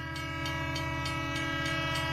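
Train horn sound effect: a steady chord of several notes held throughout, growing slightly louder, over a low rumble.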